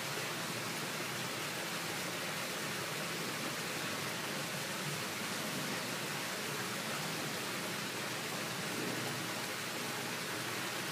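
Steady rushing hiss of flowing water in a pool, even and unbroken.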